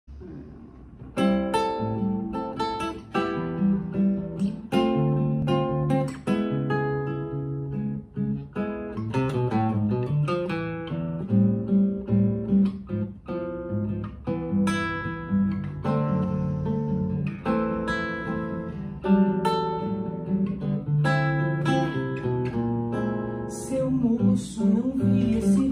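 Nylon-string classical guitar playing the instrumental introduction to a samba song. It starts about a second in, with rhythmic plucked and strummed chords and bass notes.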